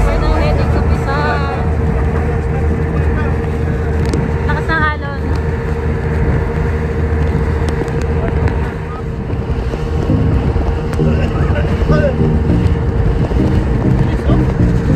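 Speedboat under way heard from on board: the motor runs steadily under loud wind buffeting on the microphone and the rush of the hull over the water. Passengers' voices call out briefly twice, about a second in and about five seconds in.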